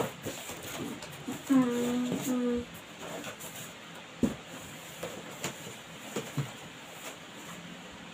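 A person's short two-part vocal sound, held on one pitch, about a second and a half in, followed by a few light knocks and taps.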